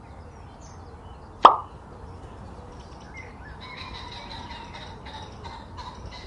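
A single short, sharp pop about a second and a half in, over a faint steady hiss with faint bird chirps in the background.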